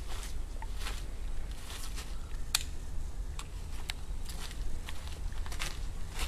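Footsteps crunching on dry leaf litter, irregular, with one sharper snap about two and a half seconds in, over a steady low rumble.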